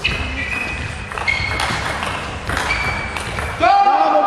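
Table tennis rally: the ball clicking off bats and table, with shoes squeaking on the court floor. It ends about three and a half seconds in with a sudden loud shout as the point is won.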